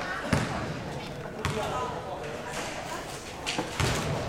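A basketball bouncing on an indoor gym floor, with four separate thumps spread across the few seconds, two of them close together near the end, as it is handed to a free-throw shooter.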